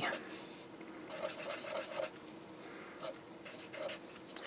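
Felt-tip marker drawing on paper: a few short, faint scratchy strokes as a dot and a letter are written.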